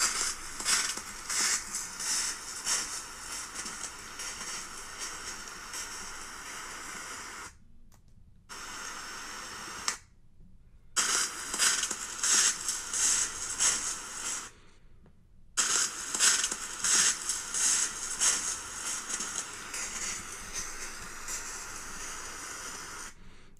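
Trail camera's built-in microphone recording: a steady hiss with loud, irregular crunching and crackling, typical of something walking through dry leaf litter. The sound drops out completely for about a second three times.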